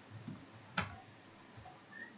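A single sharp click from computer input about a second in, with a couple of fainter ticks before it, over low hiss.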